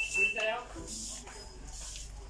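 A steady high-pitched electronic tone that cuts off about half a second in, with a few words of speech over it, then low steady background noise.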